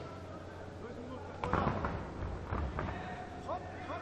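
Dull thuds of bodies dropping onto a grappling mat about a second and a half in, with a second thud about a second later, followed near the end by short shouts from voices around the mat.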